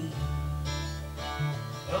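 Live country music: acoustic guitar played over sustained low bass notes in a short instrumental gap between sung lines, with the singer coming back in on one word at the very end.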